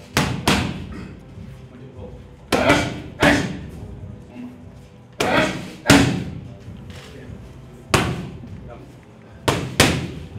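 Boxing gloves hitting a trainer's focus mitts in quick combinations: sharp pops, mostly two punches about half a second apart, repeated every two to three seconds, about nine punches in all.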